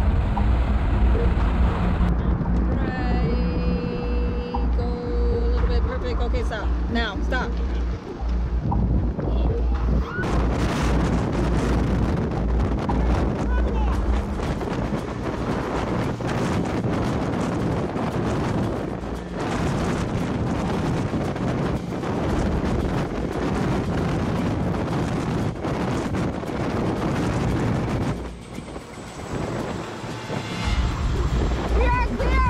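Wind buffeting an outdoor microphone as a deep, steady rumble, with some thin high tones between about two and nine seconds in, and hissier gusts from about ten seconds in.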